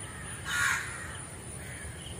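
A single short bird call about half a second in, over a faint steady outdoor background.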